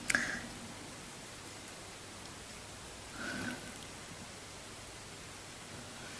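Steady hiss of room tone and microphone noise in a small room, broken by two brief faint sounds, one at the very start and one about three seconds in.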